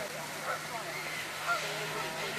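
A flock of gulls calling over a pond: many short, overlapping squawks, a couple standing out louder. Underneath, the steady splash of fountains.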